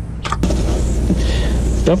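A steady low mechanical rumble, with two light knocks about a quarter second in and a faint hiss around the middle.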